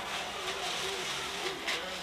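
Faint background voices of people talking in a room, over a steady hiss.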